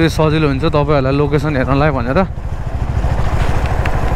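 Motorcycle engine running steadily while the bike is ridden along a road, a low pulsing rumble heard from the rider's seat; a man's voice talks over it for the first two seconds.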